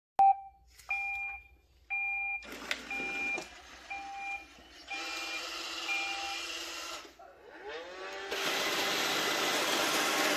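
iRobot Roomba robot vacuum starting up. A click and a short beep come first, then more beeps over the first six seconds while a motor whirs. Its motors then spin up with a rising whine, and the vacuum runs louder from about eight seconds in.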